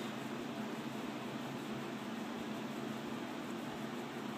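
Steady background noise: a constant hiss with a faint low hum, unchanging throughout, with no distinct sounds from the work.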